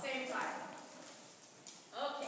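A pony's hoofbeats at a canter on soft sand arena footing, with a voice speaking briefly near the start.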